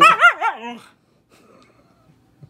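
Siberian husky "talking": a loud, wavering yowl that swoops up and down in pitch several times and stops a little under a second in. It is a bored, demanding protest, the dog pestering to be taken out for exercise.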